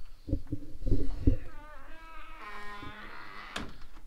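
Heavy thumps on wooden boards, then a drawn-out wavering creak and a sharp click near the end: a wooden cabin door being opened and shut.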